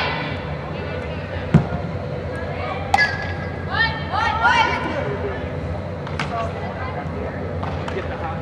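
Softballs knocking sharply off a bat and into leather gloves, three knocks with the first the loudest, and players shouting short calls near the middle, over the steady hum of a large indoor hall.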